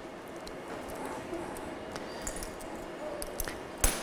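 Quiet studio room tone with faint, indistinct voices and a few small clicks, and one sharp knock a little before the end.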